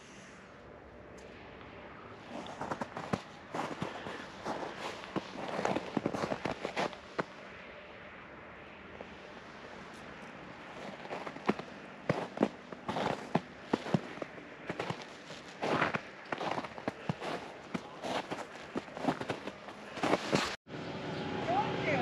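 Footsteps crunching on packed snow, an irregular run of sharp crunches with a quieter stretch partway through.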